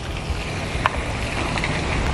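Steady noise of wind and rain in a downpour, with a low rumble of wind on the microphone.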